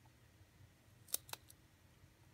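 A rabbit gnawing a pine cone: two sharp crunches about a second in, then a fainter third.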